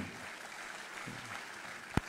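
Audience applauding steadily, with a single sharp click near the end.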